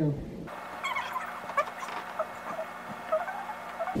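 Sped-up audio from fast-forwarded footage: voices and movement turned into a high-pitched, chirping chatter, starting abruptly about half a second in.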